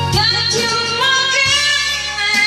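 Loud music with a woman singing, her voice gliding between notes over a steady bass line.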